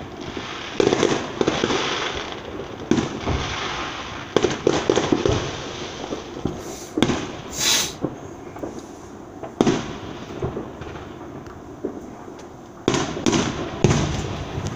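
Aerial fireworks going off: a string of sharp bangs at irregular intervals with crackling between them, and a brief hiss a little past halfway as a rocket climbs.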